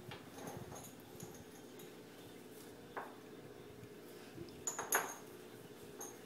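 Quiet kitchen handling: a few sharp clinks of utensils and dishes, one about halfway through and two close together near the end, over a faint steady hum.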